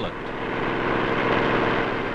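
Airboat driven by an airplane propeller, its engine and propeller running as a steady roar that swells slightly, with music faint beneath.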